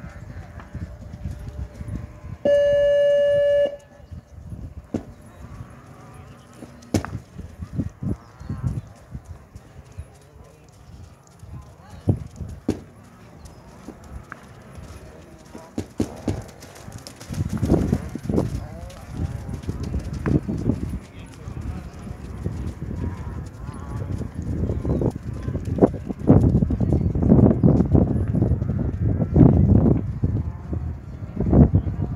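A show-jumping start buzzer sounds one steady electronic tone for about a second near the start. From about halfway, a horse's hoofbeats on the dirt arena grow louder as it canters past.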